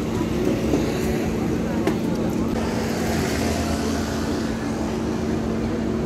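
Steady street traffic noise: vehicles running on the road, with a constant low hum under it.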